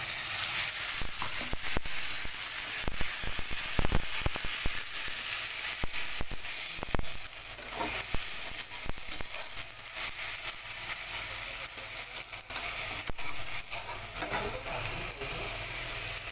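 Ginger, garlic and tomato paste sizzling as it fries in hot oil in a kadai, loudest at first as it goes in. A metal spatula scrapes and clicks against the pan as it is stirred.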